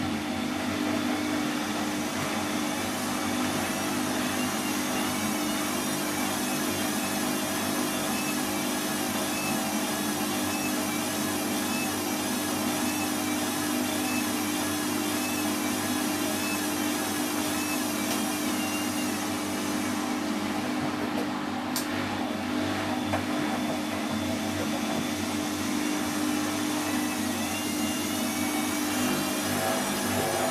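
Bosch Exxcel WFO2464 front-loading washing machine running at the drain after the wash: a steady hum with a higher motor whine that wavers up and down in pitch. There is a single sharp click about two-thirds of the way through.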